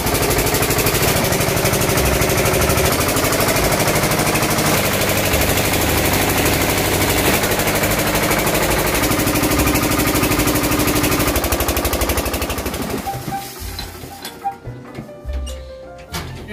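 Small rice milling machine running, driven by a single-cylinder diesel engine with a fast, steady beat, and music playing over it. The sound drops away about thirteen seconds in.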